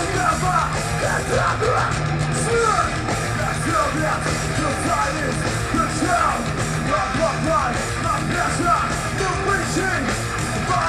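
Thrash metal band playing live, with distorted electric guitars, bass guitar and drums going hard at a steady loud level, heard from the crowd through a camera microphone.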